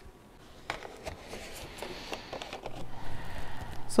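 Scattered light clicks and taps of hands handling plastic gear and clay pebbles, with a faint steady low hum in the background.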